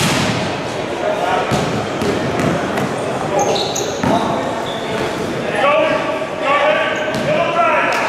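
Basketballs bouncing on a hardwood gym floor, with brief high sneaker squeaks, echoing in a large hall. Indistinct shouting voices join in about halfway through.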